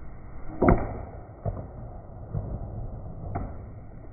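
Baseball bat striking a pitched ball in a batting cage: one sharp crack under a second in, followed by a few fainter knocks as the ball lands.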